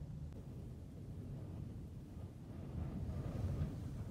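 Faint low rumble heard from inside a vehicle, swelling a little about three seconds in.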